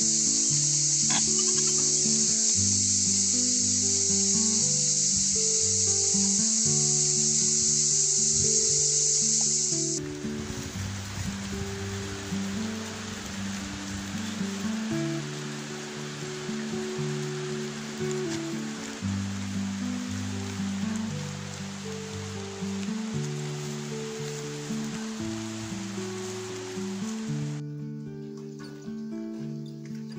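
Background music: a melody of held notes over a bass line. Under it, a steady high hiss fills the first ten seconds and stops abruptly. A fainter even noise follows until near the end.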